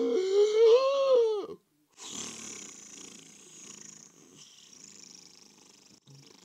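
Donald Duck's squawking cartoon voice, gliding up and down for about a second and a half. Then, after a short gap, a long steady hiss of air escaping from a rubber air mattress, slowly fading.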